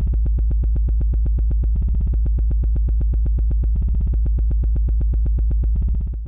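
Electronic music sting: a steady synthesizer bass drone with a rapid, even pulse.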